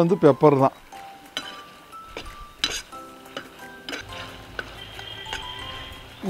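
Steel slotted skimmer stirring in a stainless steel frying pan: a few scattered sharp metal clinks and scrapes against the pan as the pieces are turned, with light background music underneath.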